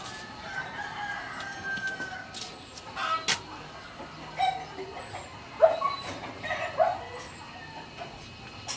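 Animal calls: a faint long call in the first two seconds, then several short, sharp calls spaced through the rest.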